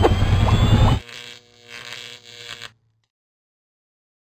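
Produced outro sound effect: a loud rushing whoosh with a deep rumble and thin rising whistles, stopping sharply about a second in, then a softer ringing tail in three swells that cuts off to silence shortly before three seconds.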